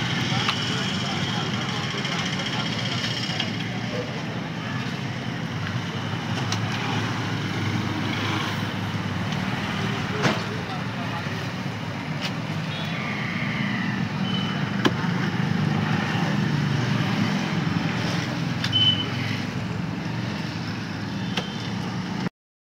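Steady roadside background of vehicle traffic with indistinct voices, broken by a few sharp clicks.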